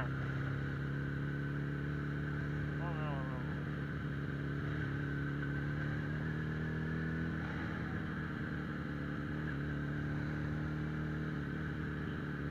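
Suzuki Bandit 650N's inline-four engine running at steady cruising revs under way. The engine note shifts briefly about seven and a half seconds in, then holds steady again.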